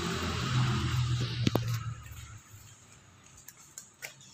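A motor vehicle passing on the street: a low engine hum with road hiss, fading away about halfway through, with a sharp click near the middle.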